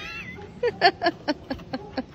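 A woman laughing in a quick run of short, high-pitched bursts, about four a second, after the tail of an exclaimed "oh!".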